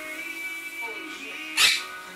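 Music playing from a television broadcast, with one short, loud, sharp sound about one and a half seconds in.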